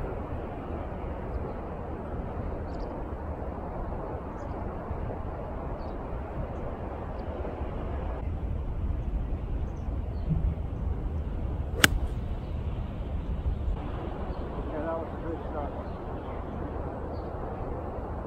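A single sharp strike of an 8-iron on a golf ball hit off the grass without a tee, about two thirds of the way in, over a steady low background noise.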